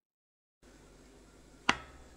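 Dead silence, then faint room tone with a single sharp click a little past halfway through.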